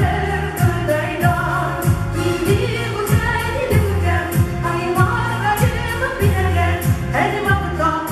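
Female vocal ensemble singing a Tatar song over music with a steady beat of about two strikes a second.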